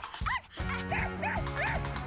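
A small dog yapping: about five short, high yaps in quick succession over background music.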